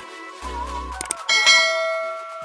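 Background electronic music with a wavering melody and a bass note; a little over a second in, a loud bell-like metallic ring strikes and fades away over about a second.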